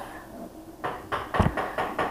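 A Beyblade spinning top spinning and travelling across a wooden floor: faint scraping with a few light knocks and one dull thump a little past halfway.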